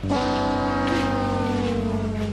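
A comic horn-like sound effect: one long, smooth tone of several pitches sounding together, sliding slowly downward.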